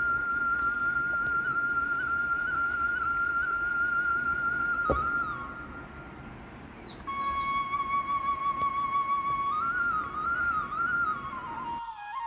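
Background flute music: a slow melody of long held notes with small ornamental turns, dipping quieter about halfway through. A single soft thump just before the five-second mark.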